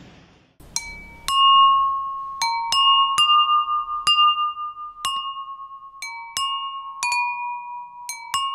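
Jal tarang: water-filled porcelain bowls struck with thin wooden sticks, playing a slow melody of bright ringing notes from about a second in. There are about a dozen strikes, each note ringing on and overlapping the next, with pitches stepping slightly from bowl to bowl.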